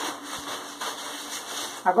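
A sheet of crepe paper rustling and crinkling steadily as it is unfolded and handled.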